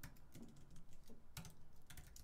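Faint computer keyboard typing: a few scattered keystrokes entering a command at a terminal prompt.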